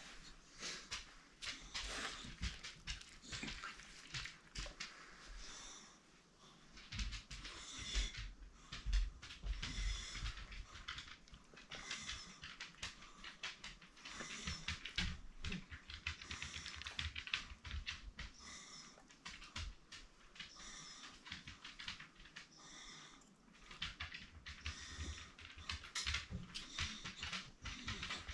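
Irregular scrabbling, rustling and clicking from a small dog squirming in a person's arms during a seizure-like episode, with a few soft handling thumps.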